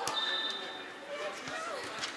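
Players' voices in a large indoor hall, with one sharp hit of a volleyball right at the start.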